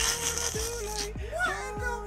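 A mumble-rap freestyle playing back over a hip hop beat. Deep bass hits slide down in pitch about every half second under a drawn-out melodic line, with a bright burst of hiss at the start.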